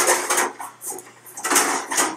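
Metal baking pans clattering as they are handled in a drawer under the oven: one spell of clatter at the start and another about a second and a half in.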